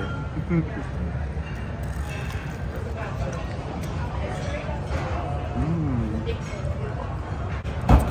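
Buffet dining-room background: indistinct chatter of other diners over a steady low rumble, with a short laugh about a second in.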